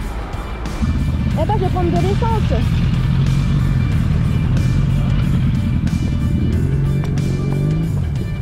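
Background music with a motorcycle engine running steadily underneath from about a second in, its pitch rising a little near the end before it cuts off.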